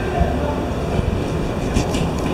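A loud, steady low rumbling noise, with a few sharp clicks near the end.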